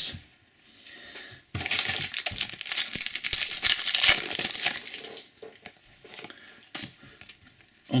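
Topps Match Attax foil booster pack being torn open and crinkled in the hands: a dense crackling rustle starting about a second and a half in and lasting about three seconds, then softer scattered rustles.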